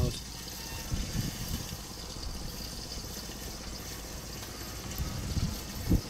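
Strong wind buffeting the microphone: a low, steady rumble with louder gusts about a second in and near the end.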